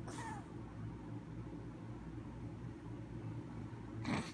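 A brief high, meow-like whine in the first half-second, then a steady low hum for the rest.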